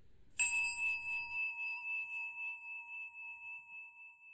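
A meditation bell struck once, about half a second in, ringing on with a slowly fading, wavering tone.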